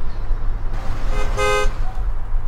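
A vehicle horn gives one short toot about a second and a half in, over a steady low hum.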